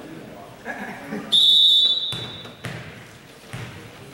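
Referee's whistle, one short high blast signalling the serve, followed by a volleyball bounced three times on the gym floor.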